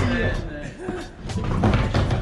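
Skateboard knocking against the plywood deck and coping of a mini ramp as the skater sets it up to drop in: a few sharp knocks, heaviest near the end.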